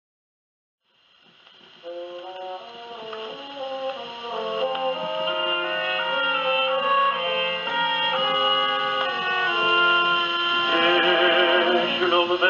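Orchestral introduction to a Polish opera tenor aria, played from a 1937 Odeon 78 rpm shellac record on a portable acoustic gramophone. The sound is thin and narrow, typical of an old acoustic record. After about a second of silence, needle surface noise starts, then the orchestra comes in and grows steadily louder.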